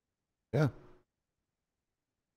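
Speech only: a man's single brief "yeah" about half a second in, with a breathy, sigh-like fall.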